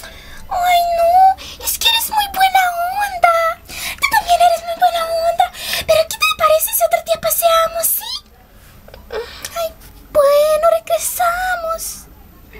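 A high-pitched voice wailing or singing without clear words, in drawn-out, wavering phrases with short breaks. It falls quiet for about two seconds around eight seconds in, then resumes.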